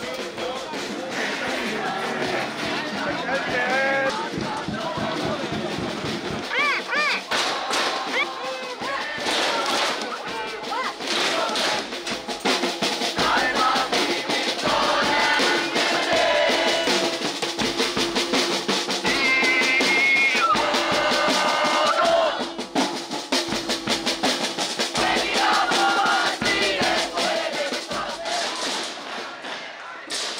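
Music: voices singing over a steady drum beat.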